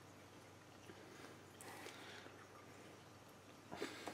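Near silence, with faint rustling and a few soft ticks from a small furry pet being handled close to the microphone, and a slightly louder rustle just before the end.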